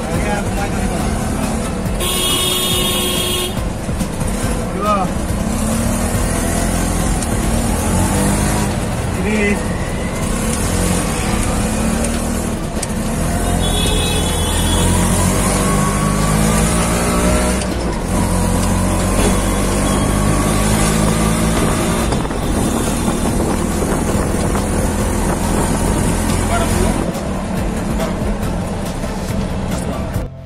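Auto-rickshaw engine running under way through traffic, heard from inside the open passenger cabin, its pitch rising and falling as it speeds up and slows. A horn sounds for about a second and a half near the start.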